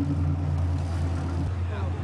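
Sport-fishing boat's engine droning steadily while under way, a low even hum. Faint voices come in over it in the second half.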